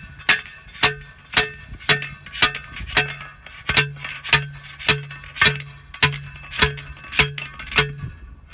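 Manual steel post pounder slamming down onto a steel T-post, driving the stake into the ground: a steady series of about fourteen loud metal clanks, roughly two a second, each with a brief ring.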